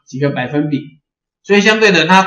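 Speech only: a man lecturing in Mandarin, two spoken phrases with a short pause between them just after the first second.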